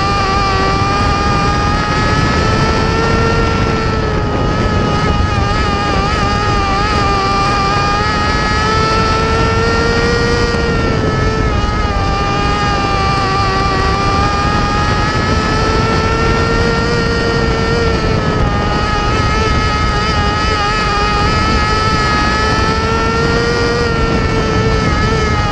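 A mini sprint race car's engine running hard at high revs, heard from inside the car. Its pitch rises and falls in a smooth cycle about every six to seven seconds as it goes around the dirt oval.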